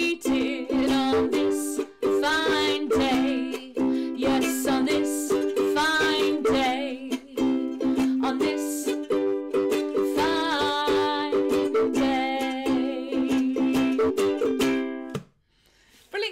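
Ukulele strummed in a steady folk-blues rhythm. The playing stops shortly before the end.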